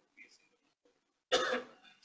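A person coughing once, a little over a second in, the loudest sound here; before it only faint, indistinct murmurs.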